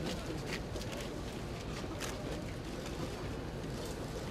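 Steady background noise of a large crowd on the move outdoors: a continuous shuffling hubbub with no clear words, broken by a few short sharp clicks.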